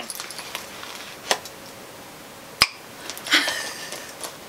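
Handling noise from a small crossbody bag and pouch being worked in the hands: quiet rustling with two sharp clicks, the second, about two-thirds of the way through, the louder.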